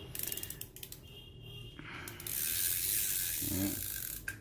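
Small spinning fishing reel being worked by hand: a quick run of ratchet-like clicks, then from about halfway through a steady whir as the handle is cranked and the rotor spins fast.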